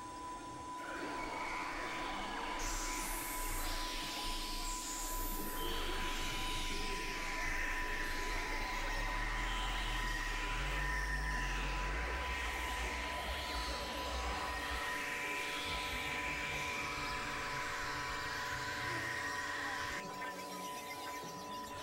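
Experimental electronic drone and noise music from synthesizers: a steady high tone held throughout under shifting hissy, grinding textures, with a deep low drone that swells in a couple of seconds in and fades out about three-quarters of the way through.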